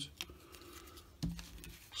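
Faint handling of thin laser-cut plywood parts: a light click about a quarter second in and soft rubbing as the cowl rings are separated and held.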